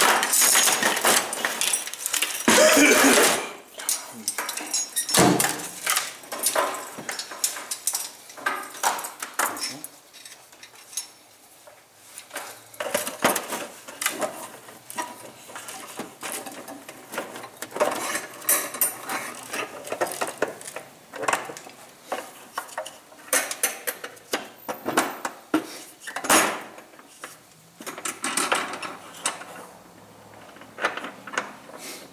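A steel 330 Conibear body-grip trap being forced into a plastic bucket, metal clinking and rattling against the plastic as the bucket flexes and stretches to fit. The sounds are irregular scraping and knocking, with a loud burst of scraping about three seconds in and sharp knocks around five seconds in and again near the end.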